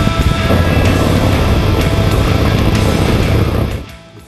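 Loud music soundtrack running steadily, then cutting off abruptly just before the end.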